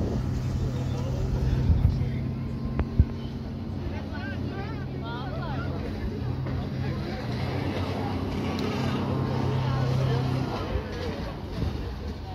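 A motorboat engine drones steadily on the water while a speedboat tows an inflatable ride tube, with voices calling out in the middle. A couple of sharp knocks come in the first few seconds.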